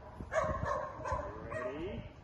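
A dog barking and whining: a sharp bark about a third of a second in, then a whine that falls in pitch near the end.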